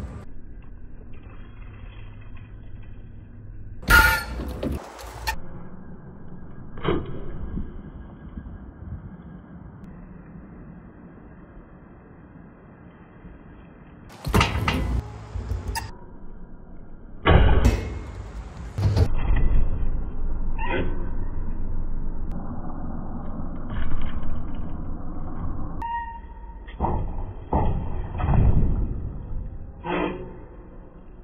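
BMX bike riding on skatepark ramps, tyres rumbling over concrete and wooden ramp surfaces, with several loud knocks of the wheels hitting ramps and landing from jumps.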